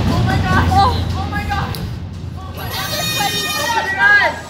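Riders' wavering, wordless voices and laughter, with a low steady hum of the ride machinery underneath that fades out about halfway. A higher, stronger voice sets in about two and a half seconds in.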